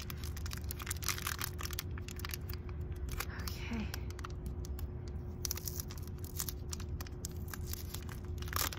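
Blind-box toy packaging being opened by hand: a run of quick crinkling and tearing crackles.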